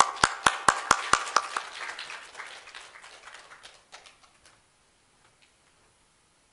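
Audience applauding. A few loud single claps close to the microphone stand out at the start, and the applause dies away after about four seconds.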